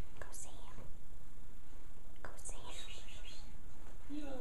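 A person whispering softly in two short stretches, with faint hissy 's' sounds, over steady low background noise.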